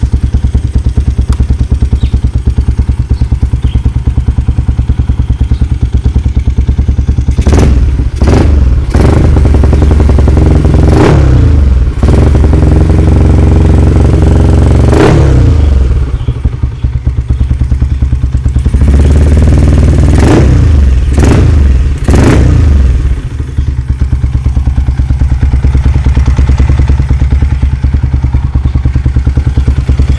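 Yamaha motorcycle's single-cylinder four-stroke engine, just rebuilt with an HHM head and block, running on its first test start. It idles loudly and is blipped on the throttle several times, with a cluster of revs in the first half and another near two-thirds through.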